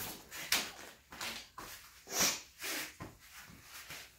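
A run of short rustles and scrapes, about eight in four seconds, the loudest a little past two seconds in, from a sheet of cardboard being handled.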